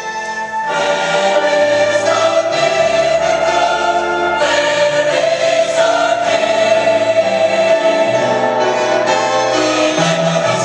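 Church choir singing a Christmas piece with orchestral accompaniment. The full choir and ensemble swell in under a second in and then sing on with long held notes.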